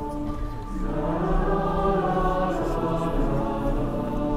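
Mixed choir singing sustained, held chords; about a second in the sound swells louder and fuller as higher voices come in.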